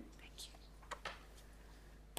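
Near silence: quiet room tone with a few faint, brief handling taps and rustles in the first second.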